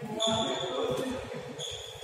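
Shoes squeaking on the synthetic badminton court mat as players move and lunge: a high squeak lasting almost a second from just after the start, then a shorter one near the end.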